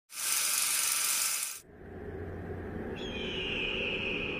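Opening sound effects: a loud burst of hiss lasting about a second and a half that cuts off suddenly, followed by a low rumbling ambience, with a steady high tone coming in about three seconds in.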